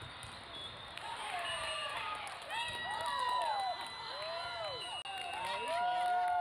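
Teenage girls' volleyball players and spectators shouting and cheering as the rally ends on the match-winning point of the third set, many high shouts rising and falling over each other. A steady referee's whistle sounds from about two and a half seconds in.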